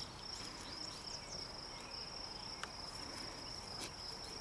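Insects chirping in a steady, pulsing high trill, with a couple of faint short clicks near the end.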